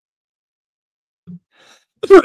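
Dead silence with the microphone muted. Then, about a second and a quarter in, a man makes a short grunt and a soft, breathy, sigh-like exhale as the microphone comes back on, on the verge of coughing.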